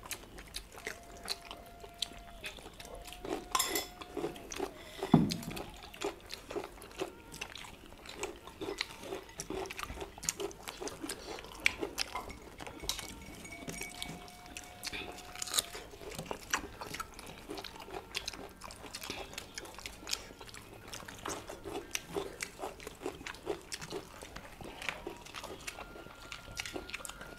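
Several people chewing and eating at a table, with many small clicks of food, fingers and cutlery against plates, and one louder knock about five seconds in.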